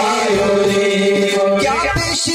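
Group of men singing a devotional chant with harmonium and hand drums. The voices hold one long steady note that bends upward near the end.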